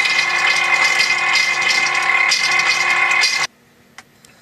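Oil-change pump running with a steady hum and a dense rattle, sputtering as it draws the last used oil out of the bottom of the Perkins 4-236 diesel's oil pan. It stops abruptly about three and a half seconds in.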